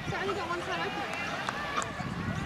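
Several voices shouting and calling out over one another, some of them high-pitched: spectators and players at a junior rugby league game.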